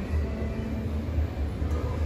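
Steady low rumble of background noise, with no guitar being played.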